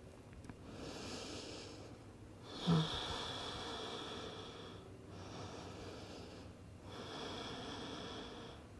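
Slow, deep breathing by a person in a resting yoga pose: about four long breaths, in and out, each a soft rushing sound of one to two seconds with short pauses between. A brief, louder sound comes about three seconds in.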